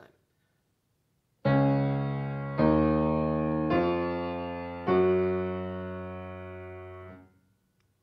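Piano played with both hands together: four slow, separate notes in the sharp-key run C-sharp, D-sharp, E-sharp, F-sharp, starting after a short silence. The last note is held and rings for about two seconds as it fades.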